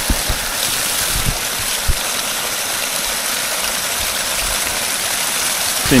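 Water gushing out of the open end of a disconnected micro-hydro supply pipe and splashing onto the ground, flushing debris out of the line. It runs steadily, with a few soft low thumps in the first two seconds.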